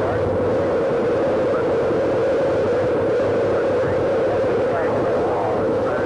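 Space Shuttle Columbia's main engines and solid rocket boosters firing at liftoff: a loud, steady roar heard through old broadcast television audio.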